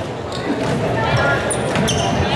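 A volleyball being struck during a rally in a gymnasium: a sharp smack at the start and two more close together near the end, each with a short echo off the hall. Player calls and crowd voices run underneath.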